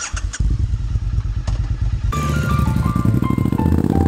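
Motorcycle engine running on the move. About halfway through, electronic background music with a stepped keyboard melody comes in over it.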